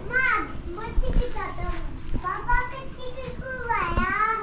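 High-pitched voices calling out in short rising-and-falling cries, several times, like children at play.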